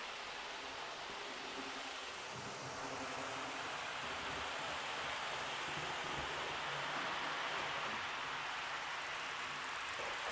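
Proto 2000 HO-scale GP20 model locomotive running at near full power, with a steady whirring hum and rumble from its motor and from the wheels of a string of hopper cars rolling over the track.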